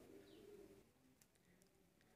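Near silence, with a faint bird calling in the background.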